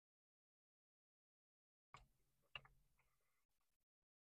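Near silence: nothing for the first two seconds, then two faint clicks about half a second apart.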